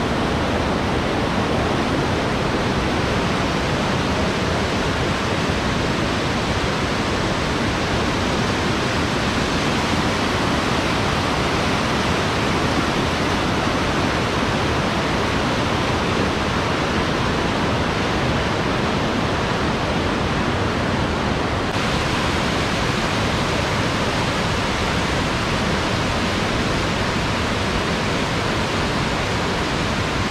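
Beas River's fast white-water rapids rushing over boulders: a loud, steady wash of water.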